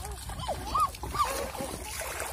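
Short, rising-and-falling cries and squeals from young children, several in quick succession, over the splashing of feet wading through shallow pond water.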